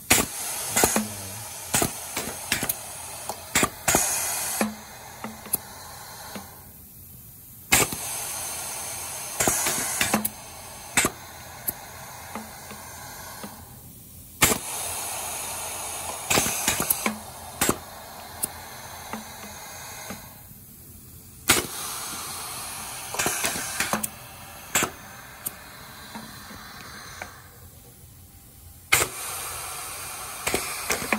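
Four linked Hibar pneumatic piston filling machines cycling together. Sharp clicks and knocks from the air valves and pistons come with bursts of compressed-air hiss, and the pattern repeats about every seven seconds with a short quieter pause between cycles.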